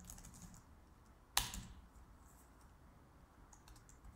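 Typing on a computer keyboard: a few soft key clicks at the start, one much louder sharp knock about a second and a half in, and a few more soft key clicks near the end.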